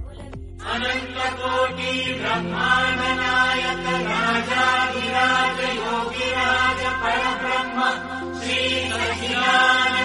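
Recorded devotional mantra chant, a sung voice line over a steady low drone, starting about half a second in.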